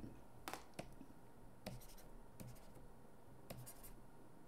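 Faint taps and scratches of a stylus writing on a tablet screen: a handful of light, irregularly spaced clicks, with a short cluster near the end.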